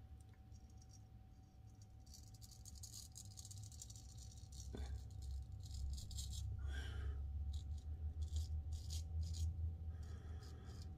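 Safety razor scraping through lathered beard stubble in short repeated strokes, getting louder from about two seconds in. Under it runs a steady low hum from the room's heating.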